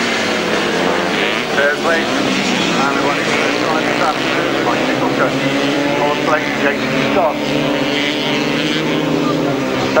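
Several 250cc grasstrack solo racing motorcycles at full race pace, their engines revving up and down in pitch as they slide through the bend and drive out along the straight, several engines overlapping.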